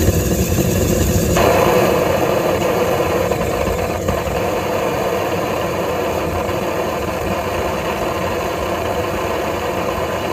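Air-aspirated propane forge burner running at full flame, a loud steady rushing sound with a low rumble underneath. About a second and a half in its sound fills out and grows stronger, then holds steady. The builder hears a turbulent buffet in its airflow, which he takes for an unsteady air supply.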